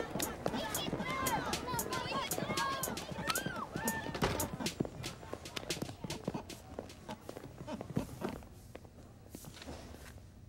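Students' shoes clicking on a tiled school hallway floor, mixed with children's voices chattering in the first few seconds. The footsteps and voices thin out and grow quieter, leaving only a few scattered steps near the end.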